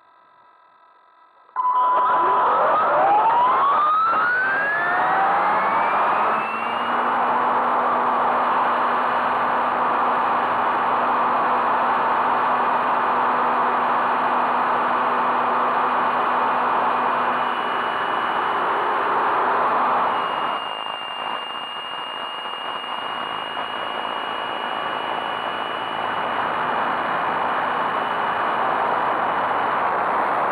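Mikado Logo 600 SX electric RC helicopter's motor, drivetrain and rotor heard from an onboard camera: starts suddenly about a second and a half in and spools up with a rising whine over several seconds, then runs steadily in flight. Around twenty seconds in the level dips and a higher, steady whine comes in.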